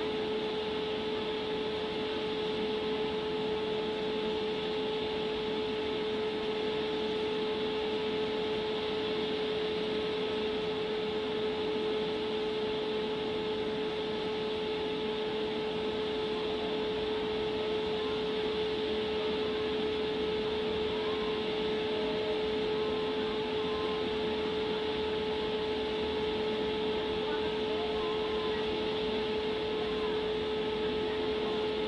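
Steady machine hum: one constant tone over an even hiss, with no change in pitch or level.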